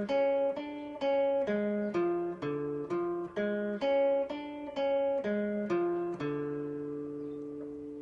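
Acoustic guitar playing a D diminished major seventh arpeggio one plucked note at a time, about two notes a second, stepping up and back down in pitch. The last note is left ringing for nearly two seconds and fades near the end.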